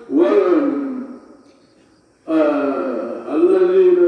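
A man's voice in long, drawn-out, chant-like phrases of sermon delivery, with a pause of about a second in the middle.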